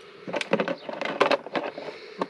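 Hard plastic parts of a small egg incubator being handled, giving a string of irregular sharp clicks and knocks.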